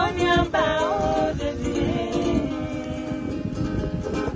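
Women singing a gospel song together, one voice sliding between notes, over a small wooden acoustic guitar being strummed. The voices drop away about two and a half seconds in, leaving mostly the guitar.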